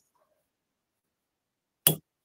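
A single firm hammer tap on a metal period stamp, punching a small dot into a metal cuff blank on a bench block, about two seconds in after near silence.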